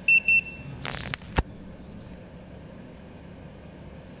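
Portable surface roughness tester giving two short, high beeps in quick succession as its measurement finishes. About a second later come a brief rustle and a sharp click.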